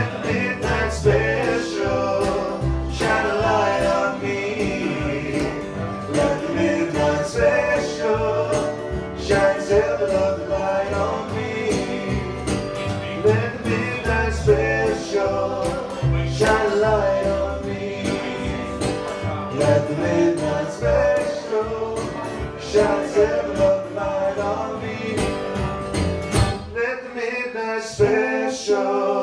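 Live acoustic blues band playing: strummed acoustic guitar, plucked double bass and harmonica, with male voices singing in harmony. Near the end the guitar and bass drop out, leaving the voices alone.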